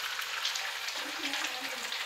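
Food frying in a pan: a steady sizzle, with a faint voice in the background partway through.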